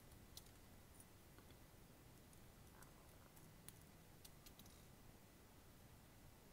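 Near silence with a few faint, sharp clicks: thin Kanthal coil wire being twisted and snapped off at the atomiser's screw posts.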